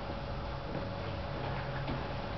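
Room tone in a pause of a live performance: an even background hiss with a faint steady hum.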